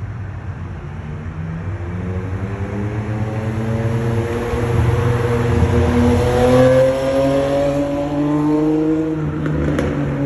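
A car engine accelerating, its pitch climbing and its sound growing louder over about five seconds, then dropping back and climbing again near the end. A steady low traffic rumble runs underneath.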